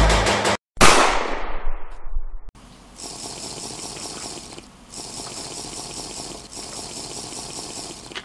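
A single loud pistol shot at an indoor range, its echo dying away over about a second and a half. It follows a cut from background music. After it comes a faint steady hiss of room noise.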